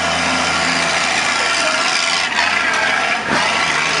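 Road traffic: a motor vehicle running on the street close by, a steady loud rush of engine and tyre noise.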